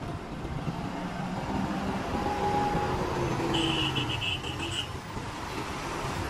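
Tata truck's diesel engine running with a steady low rumble, and a short run of high beeps about three and a half seconds in.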